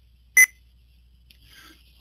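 A single short, high electronic beep about half a second in, over a faint low hum.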